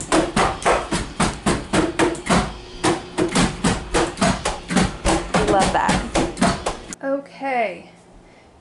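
Drumsticks striking the rubber pads and cymbals of an electronic drum kit played through headphones, so that only the dull taps of the sticks on the pads are heard: a fast, even beat of about five or six strokes a second that cuts off suddenly near the end.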